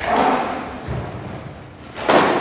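Karate strikes thumping into a training partner: a sharp thump at the start and a fainter one about a second in, the first ringing on in the large hall.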